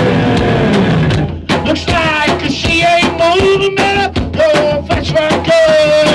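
Live rock band playing loudly, with a man singing into the microphone. The sound briefly drops out about one and a half seconds in.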